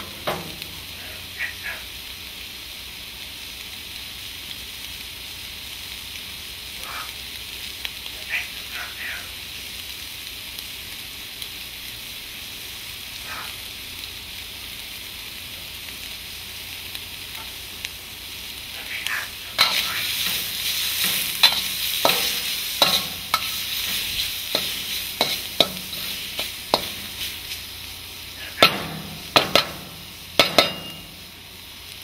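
Chicken and greens sizzling in a wok with a steady frying hiss and a few scattered clicks. About twenty seconds in the sizzle grows louder and crackles, with a quick run of sharp clicks and scrapes as a metal spatula stirs the food.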